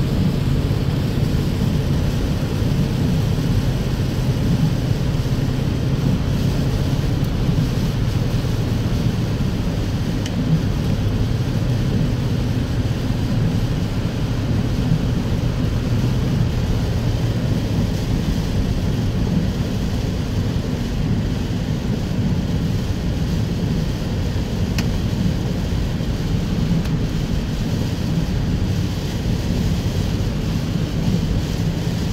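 Steady road noise inside a car's cabin on a rain-soaked highway: tyres on wet pavement and rain on the car over a low, even drone from the car.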